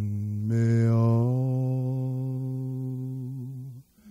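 Music: a low male voice holding one long sung note, moving to a new pitch about half a second in and stopping just before the end.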